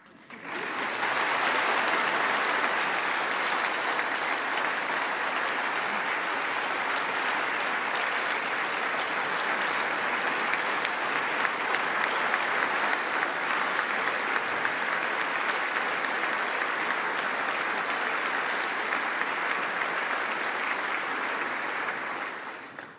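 A large audience applauding steadily. The clapping starts suddenly about half a second in and keeps going for about twenty seconds.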